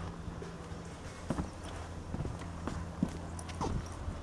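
Footsteps on a fibreglass boat deck: a few light, irregular steps from about a second in, over a low steady hum.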